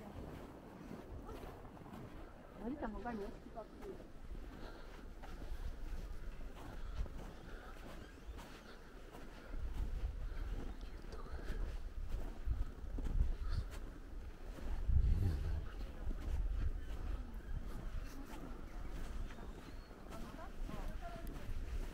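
Outdoor ambience with people talking nearby, a few words about three seconds in, and an uneven low rumble from wind on the microphone that swells in the second half.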